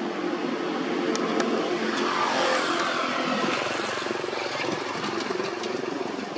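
A motor vehicle's engine running steadily and passing by, loudest about two to three seconds in, with its pitch falling as it goes past. A couple of faint clicks sound just after a second in.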